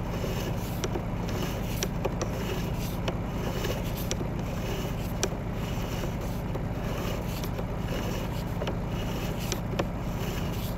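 Sewer inspection camera's push cable being pulled back through the pipe: a steady low hum with scattered light clicks and scrapes as the cable runs back.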